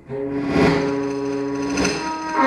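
Saxophone holding one long note, starting just after the beginning and held until near the end.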